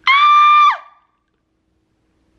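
A woman's high-pitched squeal of excitement, held steady for under a second and then sliding down in pitch.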